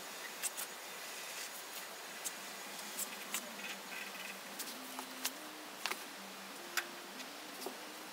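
Sharpie marker drawn across a steel car fender: faint squeaks and scattered short clicks and ticks as the line is marked out in short strokes.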